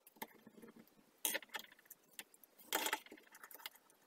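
Side-cutting pliers and small electronic parts being handled and set down on a wooden workbench: scattered clicks and rattles, with two louder clatters, about a second in and near three seconds.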